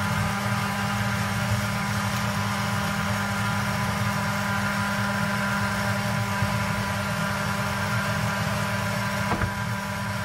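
Battery-powered portable blender's small motor running at a steady pitch, with a short click near the end.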